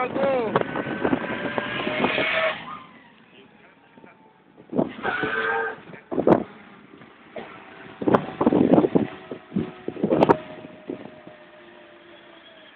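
Road vehicle noise with short bursts of voices; the loudest stretch is in the first two and a half seconds, and it then drops quieter with scattered short sounds.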